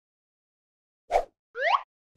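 Cartoon sound effects: a short pop a little after a second in, followed at once by a brief rising whistle-like glide.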